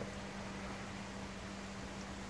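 Steady bubbling and splashing of a koi pond's air curtain driven by a Jebao/Jecod MA100 diaphragm air pump, air pouring up through the water in a strong flow. A low steady hum runs underneath.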